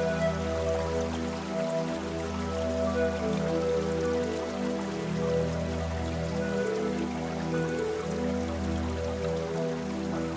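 Soft, slow piano music with long held notes over low chords that change every few seconds, with a faint patter of rain beneath it.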